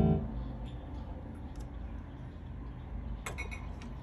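A guitar chord played through a 1963 Fender Bassman 6G6B tube amp rings out and dies away at the very start; then the amp sits idling with only a faint steady hum and hiss, a low noise floor that counts as super quiet. A few small clicks come about three seconds in.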